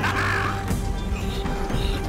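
A man's short, hoarse shout in the first half-second, over a dramatic film score.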